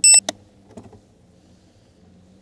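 A short, loud, high-pitched electronic beep at the very start, followed straight away by a sharp click and a fainter rattle about a second in.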